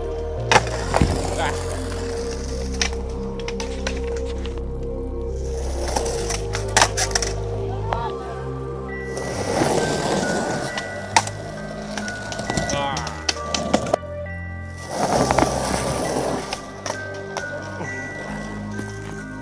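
Background music over skateboard sounds: wheels rolling on concrete and several sharp clacks of the board hitting the ground.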